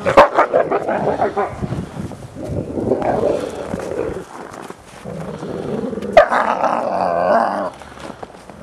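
Wolves snarling and growling in a dominance interaction, one wolf pinning another. It comes in loud bursts: a sudden outburst at the start, more in the middle, and another sudden one about six seconds in that lasts over a second.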